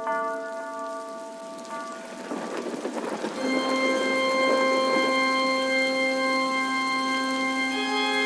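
Dark, gothic church-organ music: a held chord fades, a swell of rain-like crackling noise rises in the middle, then a new sustained organ chord comes in about three and a half seconds in and holds steady.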